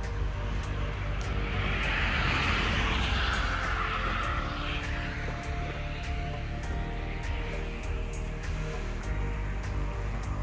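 Motorway traffic in the valley below: a steady low rumble, with one vehicle's road noise swelling up and fading away in the first half. Soft background music with held tones runs underneath.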